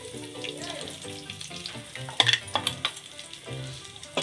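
Hot oil sizzling in a kadai as ground spice powder is tipped in from a steel plate, with a few sharp ticks about halfway through.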